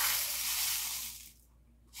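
Crushed glass pouring from one plastic cup into another: a grainy, hissing rush that dies away about a second and a half in.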